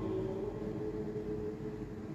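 Soft background music of sustained keyboard chords, low and steady, with a faint hiss underneath and no voice over it. The chord shifts slightly right at the start.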